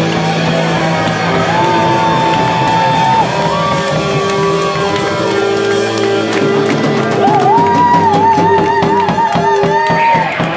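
Glam rock band playing live: an instrumental break in which an electric guitar holds long sustained lead notes over bass and drums. Near the end the lead note wavers with a fast, wide vibrato.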